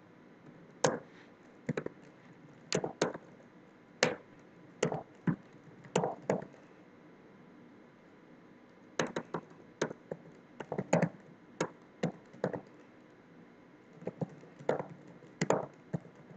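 Computer keyboard keys struck one at a time in short irregular runs of sharp clicks while code is typed, with a pause of about two seconds midway.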